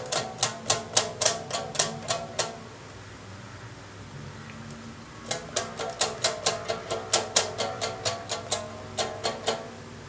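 Rubber bands stretched over the sound hole of a homemade cardboard-box guitar with chopstick bridges, plucked one after another as its notes are tried out, each a short twang, about four a second. A run of about two and a half seconds, a pause of nearly three seconds, then a second run of about four seconds.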